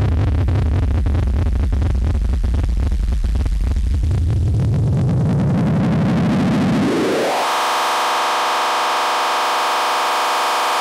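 Small analogue synthesizers playing a noisy, rumbling low drone. About seven seconds in, a pitch glides quickly upward and settles into a steady, buzzy held tone, in the manner of a Korg Monotron Delay ribbon sweep.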